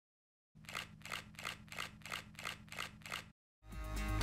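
A rhythmic run of about eight sharp, evenly spaced clicks, roughly three a second, over a faint low steady hum; it stops, and music begins just before the end.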